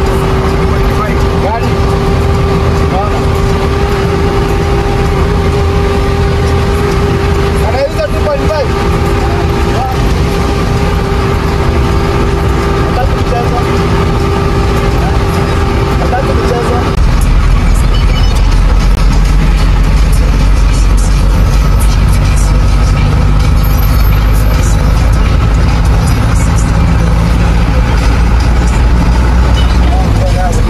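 Vehicle interior noise while driving on a wet highway: a steady engine hum over road and tyre rumble. A bit over halfway through, the sound changes abruptly: the hum drops out and a louder, deeper rumble takes over.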